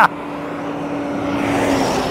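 Tri-axle dump truck approaching on the road, its engine and tyre noise growing steadily louder as it nears, with a steady hum underneath.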